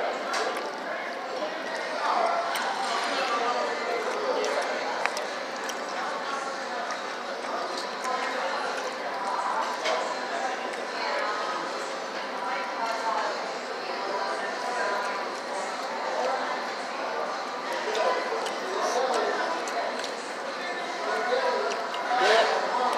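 Indistinct chatter of many voices in a restaurant dining room, going on steadily, with a few faint clinks.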